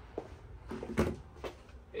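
A single knock about halfway through, with a few fainter clicks and taps before it, in a small room.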